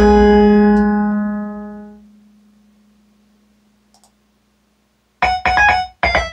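Piano-like smartphone ringtone played through a speaker system with a subwoofer: the last chord rings out and fades over about two seconds. A short silence follows with a faint click, then the next ringtone starts about a second before the end with quick, bright keyboard notes.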